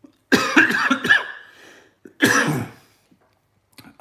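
A person coughing: a run of hard coughs lasting about a second, then another cough about two seconds in.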